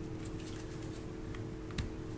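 Quiet room tone with a faint steady hum and two light clicks in the second half: handling noise from a handheld camera being moved.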